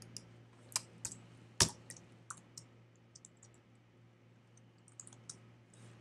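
Computer keyboard being typed on: separate keystrokes with one louder key about a second and a half in, then quick runs of light taps around three seconds and again near five seconds in.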